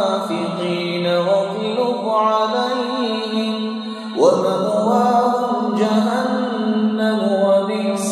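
A man's voice reciting a Quranic verse in slow, melodic chant, holding long drawn-out notes. About four seconds in he breaks off briefly for breath and begins a new phrase.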